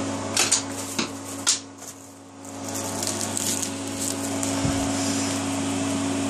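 Steady hum and whir of bench power electronics running under heavy load, a power supply and an electronic load with their cooling fans going. A few sharp knocks and handling clicks come in the first second and a half, and the hum dips briefly about two seconds in before coming back.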